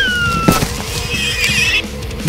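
A high animal call that slides down in pitch, then a short wavering, whinny-like call about a second later, over background music.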